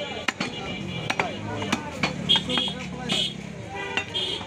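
Heavy butcher's cleaver chopping raw beef on a wooden stump block: a few sharp, irregular thuds over busy market chatter, with a few short high-pitched sounds about two to three seconds in.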